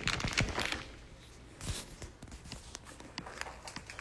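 Handling noise from a phone being moved while it records: scattered clicks, knocks and rustles, busiest in the first second, over a faint low hum.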